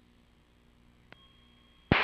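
Near silence on the aircraft radio/intercom feed, with a faint hum, a single faint click about a second in, and then a sudden loud hiss at the very end as a radio transmission opens.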